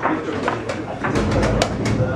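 Quick, sharp clicks of chess pieces being set down and chess-clock buttons being pressed in blitz play, several in under two seconds, over a low cooing murmur.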